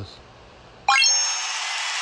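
Game-filter success sound effect: about a second in, a quick run of rising chime tones, then a steady bright hissing rush like a confetti burst.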